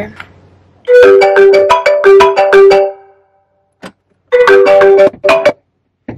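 Phone ringtone playing a short melodic phrase of clear, stepped notes, then pausing and starting the phrase again.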